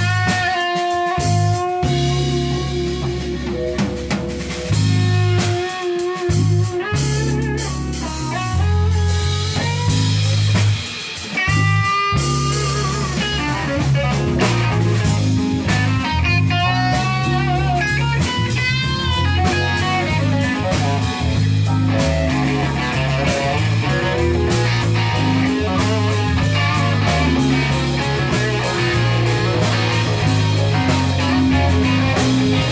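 Live jazz-funk band playing an instrumental: drum kit, bass line, electric piano, guitar and saxophone. A lead melody bends and wavers in pitch over a steady groove.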